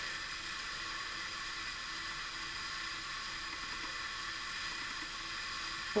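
A steady, even hiss with a faint hum underneath: the recording's own background noise, with no distinct sound events.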